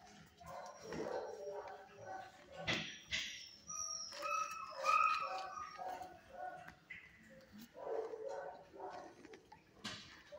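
Dogs barking and whining in animal shelter kennels, with a sharp bark about three seconds in followed by drawn-out high whines.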